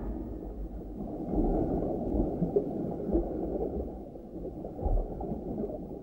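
Deep, muffled underwater-style rumbling ambience with no clear pitch and a few louder swells.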